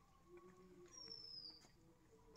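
Faint, high, thin whistled call that falls slightly in pitch, heard once about a second in: a small bird calling.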